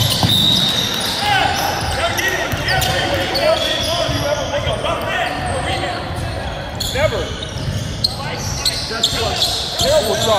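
Indoor basketball game sound in a reverberant gym: a steady murmur of crowd and bench voices, sneakers squeaking briefly on the hardwood court, and a basketball bouncing.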